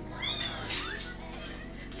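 A cat meowing once, a short high call that glides up and down within the first second, over soft background music.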